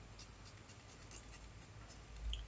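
Faint scratching of a pen on paper, in a series of short strokes.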